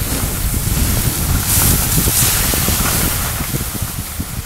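Wind buffeting the microphone in a low, steady rumble, with the hiss of skis sliding over snow swelling about halfway through.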